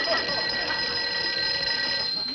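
Desk telephone bell ringing: one long, steady ring that stops near the end, leaving a short ringing tail.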